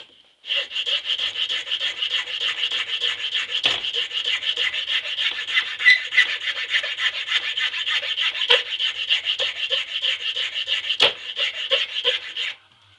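Hand file rasping back and forth across a workpiece in quick, even strokes, starting about half a second in, with three louder knocks along the way.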